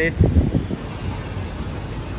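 Street traffic noise rising from the street far below, with a louder low, wavering rumble in the first second that then settles into a steady hum.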